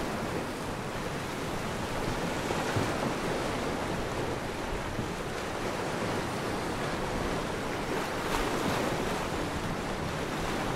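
Steady rushing noise at an even level, with no rise and fall of swells.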